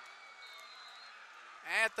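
A short pause in a man's sports play-by-play commentary, filled only by a faint steady hiss, before his voice comes back in near the end.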